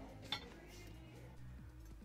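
Ceramic dishes moved by hand, with one light clink about a third of a second in, over a low hum.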